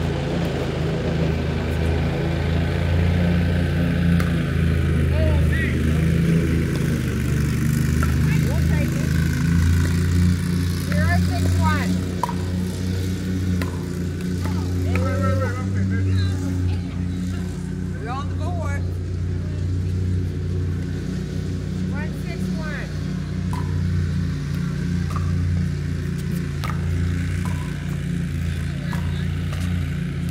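A steady low engine-like drone with faint distant voices and a few short pickleball paddle-and-ball pops.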